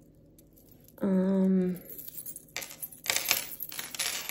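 Metal charms on a chain bracelet clinking and jingling as it is handled, a quick run of small metallic clicks starting about halfway through.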